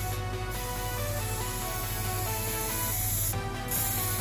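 Electronic background music with a steady beat, over which an aerosol spray-paint can gives two short hissing bursts, one at the very start and one about three seconds in.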